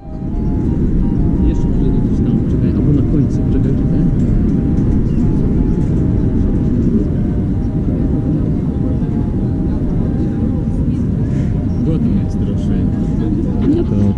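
Wind buffeting the microphone: a loud, unsteady low rumble. A faint melody of background music runs underneath.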